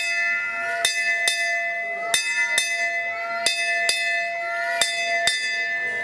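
A metal puja bell ringing with a steady, lingering tone. It is struck in pairs about half a second apart, a pair roughly every second and a half, and a faint rising voice sounds beneath it.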